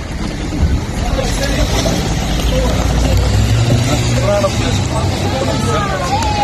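A group of people talking at once in the footage's own sound, over a steady low rumble like traffic or wind on a phone microphone.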